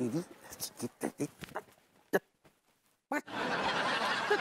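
Short broken bursts of a man's voice, like grunts and chuckles, then a sharp click and a second of near silence. Near the end a dense wash of sitcom laugh-track laughter sets in.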